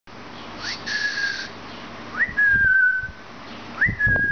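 Senegal parrot whistling: three clear whistles, each sliding up and then holding a steady note, the first about half a second in and the last starting just before the end.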